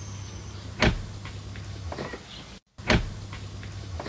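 Two sharp, loud knocks about two seconds apart over a steady low hum, with the sound cutting out completely for a moment just before the second knock.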